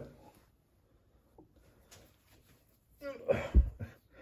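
Faint ticks of small metal dart parts being handled. About three seconds in, a man gives a short strained vocal exclamation with a low thump, as the over-tight spigot is forced loose.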